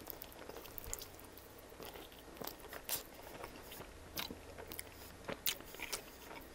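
Close-miked bite into a slice of pizza topped with arugula, followed by chewing with irregular soft crunches and wet mouth clicks.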